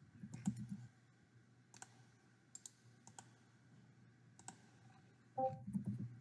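Quiet, scattered clicks of a computer mouse, about half a dozen spread out with pauses between them.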